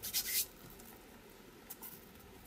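Hands rubbing and smoothing a glued paper page down onto a card journal page: a short brushing rustle of skin on paper at the start and a briefer one near the end.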